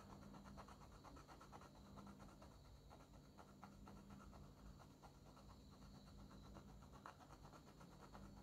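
Very faint, quick scratching strokes of a red Derwent Inktense watercolour pencil rubbed on the Caran d'Ache palette's surface to lift pigment off the lead.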